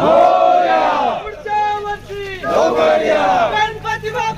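A crowd of men shouting a chant together twice, with a single voice calling in between, in call and response.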